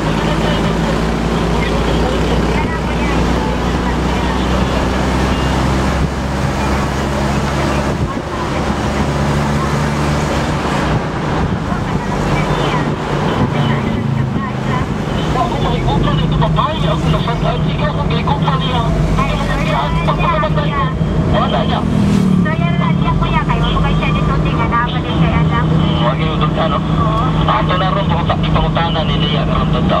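A car's engine running and road noise heard from inside the moving cabin, the engine note shifting about eight seconds in and again a little past twenty seconds. Voices join in over it in the second half.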